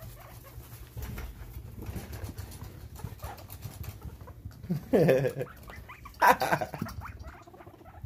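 Guinea pigs shuffling in hay and fleece with soft pattering, and two short, louder vocal calls about five and six seconds in, as they squabble over a hideout.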